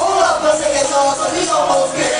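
Live hip-hop performance: a man rapping into a microphone over a backing track through the PA system.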